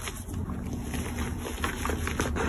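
Crushed gym chalk powder sifting and crumbling from hands into a bowl, with a few faint soft crumbly ticks over a steady low rumble.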